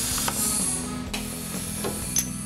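Radio-frequency welding press cycling on raft fabric: a hiss for about the first second, ending in a click, over background music.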